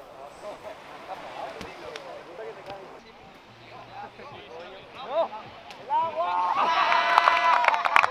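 Voices of a group of people: faint scattered talk at first, growing louder and busier in the last two seconds.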